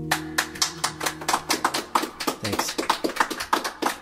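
Applause from a small audience: a scattering of separate hand claps. The song's last guitar chord fades out beneath them in the first second and a half.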